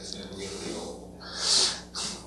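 Low speech in the room, then one short, sharp hiss about one and a half seconds in, the loudest sound here.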